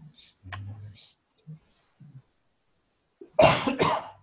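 A person coughs twice in quick succession near the end, two short loud bursts. Faint, low voice sounds come earlier, about half a second in.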